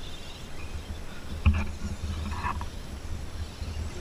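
Scale RC rock crawler clambering up a rocky dirt bank, with a steady low rumble, one sharp knock about one and a half seconds in, and a short scrabble of tyres on dirt and stone about a second later.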